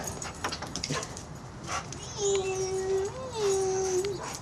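A dog whining: after a few faint clicks, one long steady whine of nearly two seconds starts about halfway in, with a brief lift in pitch in the middle. The dog is eager for a lure held just out of its reach.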